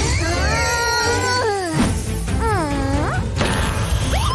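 Cartoon background music with a steady beat under cartoon cat voices: a long falling meow-like call, then a shorter swooping one in the second half, with a noisy crash-like hit between them.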